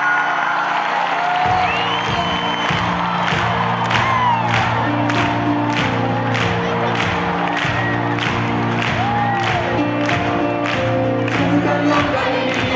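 Live pop band playing at full volume, heard from among a large arena crowd. The bass comes in about a second and a half in and a steady beat follows, with the crowd cheering and whistling over the music.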